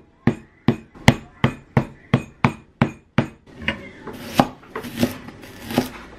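Cleaver chopping lemongrass stalks on a plastic cutting board: sharp knocks about three a second. About halfway through, the cuts slow and a scraping sound runs between them.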